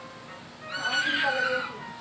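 A single high-pitched squeal from a person's voice, held for about a second starting a little under a second in.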